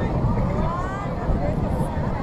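Indistinct distant voices over a steady low rumble, with no clear nearby speaker.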